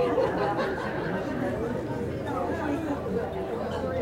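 Several people chattering at once, with a cheerful shout of "Yay!" right at the start.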